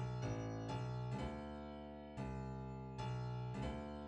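Software keyboard instrument playing sustained chords from a MIDI piano roll: chords are struck several times, each ringing and slowly fading, with no drums.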